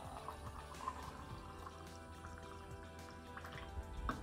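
Hot milk poured from a ceramic teapot into a ceramic mug, a faint trickle under background music.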